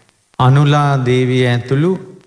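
A Buddhist monk's voice intoning one long phrase of a Sinhala sermon in a chanted, held-pitch style, starting about half a second in and breaking off just before the end.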